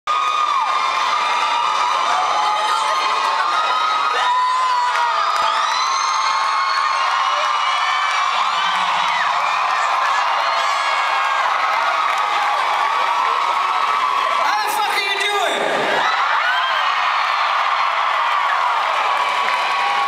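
Concert audience cheering and screaming, many high voices whooping over one another in a steady roar of crowd noise. One voice slides down in a falling yell about three quarters of the way through.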